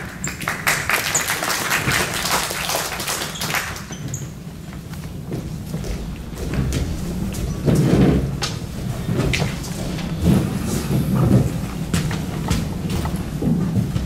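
Thuds and stamps of a Pak Mei kung fu master's footwork as he performs a hand form, with scattered sharp clicks and knocks; a dense crackling noise fills the first few seconds.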